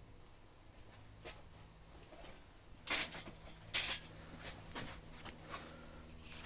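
Soft handling noises: a few brief scrapes and knocks, the two loudest about three and four seconds in, over a low steady hum.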